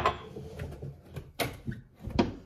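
A ceramic mug set down on a stone worktop with a sharp knock, then handling noise and a second knock about a second and a half in as a large plastic water bottle is picked up.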